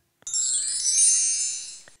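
A short twinkling chime sound effect with sweeping pitch glides, ringing for about a second and a half and fading away. It accompanies the blending arrow sweeping under the letters z-i-p, the cue to blend the sounds into a word.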